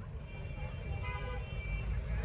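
Traffic noise: a low vehicle rumble, with a car horn sounding faintly and steadily through the second half.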